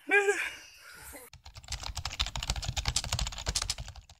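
A brief shout, then from about a second and a half in a fast, steady run of keyboard-typing clicks, many a second. The clicks are a typing sound effect under the text of the end title card.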